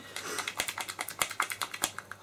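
Wooden stir stick clicking and scraping against the sides of a small plastic cup while mixing a two-part (A and B) silicone paint base: a quick, irregular run of clicks.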